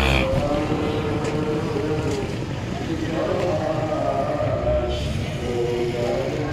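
Small motorcycle engines running and passing along a street, with a falling pitch at the very start as one goes by, and people's voices in the background.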